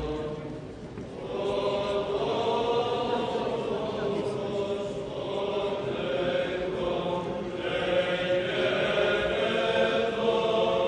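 A choir singing Greek Orthodox Byzantine chant in long held notes, with a short dip in level about a second in.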